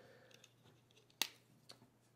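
A single sharp plastic click about a second in, followed by a couple of faint ticks, as the hinged wing panel of a plastic transforming toy figure is pried open.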